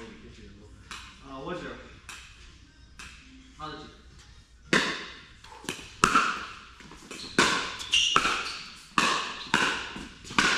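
Hard paddle hitting a plastic pickleball in a rally, with the ball bouncing on the court: sharp hits echoing in a large hall. They come about one every half second to second, starting about five seconds in.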